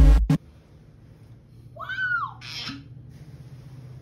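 Electronic music cuts off just after the start. About two seconds in comes a short, high-pitched vocal cry that rises and then falls, followed by a brief hiss, over a faint steady hum.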